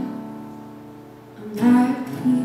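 Live acoustic guitar playing: a chord rings and fades away, then a louder strum comes in about one and a half seconds in.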